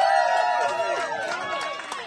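A crowd cheering and whooping, several voices at once, fading slowly, as the last band chord dies away. Scattered hand claps begin near the end.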